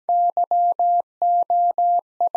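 Computer-generated Morse code at 17 words per minute: a single steady tone keyed in long and short beeps, spelling Y (dah-dit-dah-dah) and then O (dah-dah-dah), the start of the word "you" in the repeat of the sentence "You can have some."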